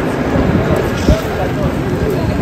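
Indistinct voices of passersby talking, over a steady, dense low background noise of a busy street.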